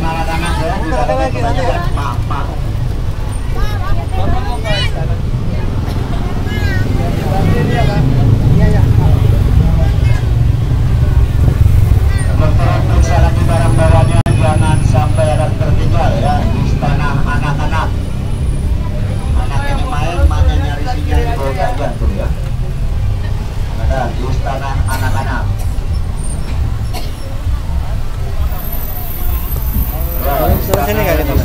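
Low engine and road rumble of an open-sided park tour bus driving along, heard from on board. The rumble is heaviest in the middle stretch, and voices talk over it on and off.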